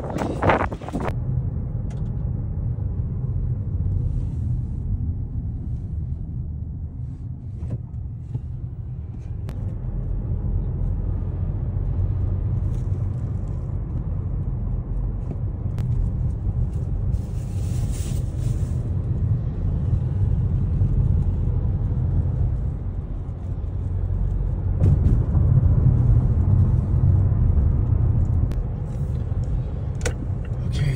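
A car's engine and tyre noise heard from inside the cabin while driving: a steady low rumble that grows a little louder near the end. A few sharp knocks open it, and a brief hiss cuts in about eighteen seconds in.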